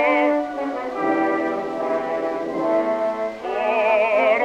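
Old opera recording: a bass voice with wide vibrato ends a sung phrase at the start, then the orchestra plays a short passage of steady held chords. The voice comes back in just before the end.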